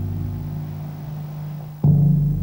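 Tom-toms played with soft mallets in a jazz drum passage: a low drum tone rings on and slowly fades, then another mallet stroke lands sharply near the end.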